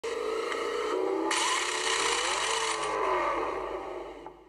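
Synthesized intro sound effect under a title card: a buzzing tone that turns suddenly brighter and fuller about a second in, with a wavering pitch, then fades out near the end.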